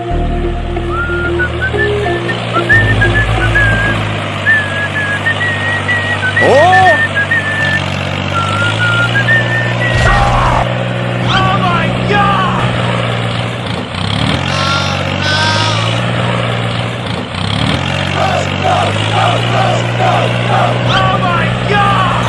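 Background music with a high melody line and steady bass notes, over a tractor engine sound effect, with a swooping cartoon sound and short wordless voice sounds in the middle and near the end.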